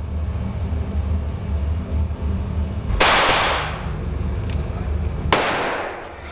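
Gunshots echoing in an indoor shooting range: two shots in quick succession about three seconds in, with a ringing tail, then a single shot near the end. A low steady hum runs underneath.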